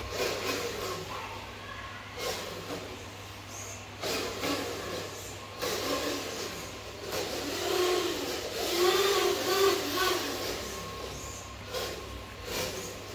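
Small electric motor and gears of a homemade remote-control truck whirring unevenly as it drives across a tile floor, with several sharp knocks along the way.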